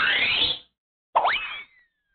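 Comedy sound effects: a rising, whistle-like pitch glide that stops about half a second in, a short silence, then a boing that swoops up and falls away.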